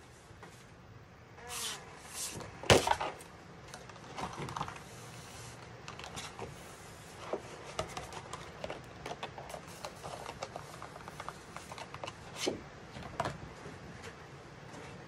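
Plastic die-cutting mat and cardstock being handled on a table: rustling and flexing, with one sharp knock about three seconds in, then a run of small crackling ticks as the sticky mat is peeled back off the cut cardstock.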